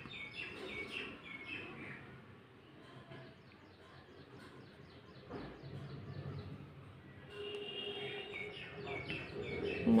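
Birds chirping in the background: runs of rapid, repeated high chirps in the first two seconds and again from about seven seconds in.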